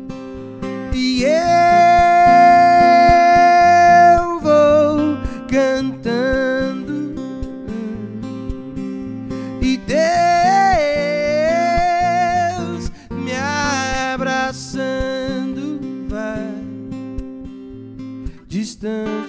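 A man singing to his own acoustic guitar: long held sung notes, one about three seconds long near the start and another with vibrato a little past the middle, over steady strummed chords.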